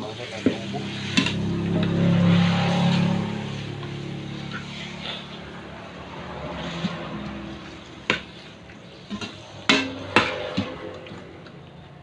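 Chicken pieces frying in a large metal wok and being stirred with a metal spatula: a steady sizzle under sharp scrapes and clicks of the spatula against the pan, with a few louder knocks about eight to ten seconds in.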